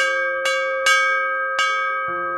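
Brass bell rung four times at uneven intervals, its ringing carrying on between strikes; the third strike is the loudest.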